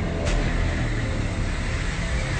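Movie-trailer sound design: a steady, dense low rumble, with one short sharp hit about a quarter second in.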